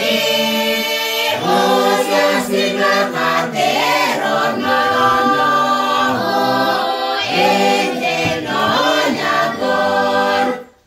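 A mixed group of carolers, men and women, singing a Christmas carol together unaccompanied.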